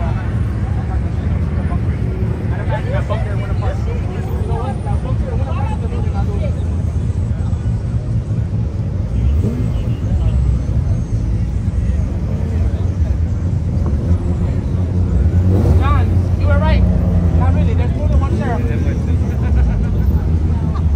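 Car engines rumbling as cars drive slowly past, growing louder about three-quarters of the way through, with crowd voices over them.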